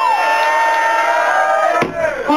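Beatboxing into a cupped microphone: one long held vocal tone, falling slightly in pitch, that stops abruptly near the end.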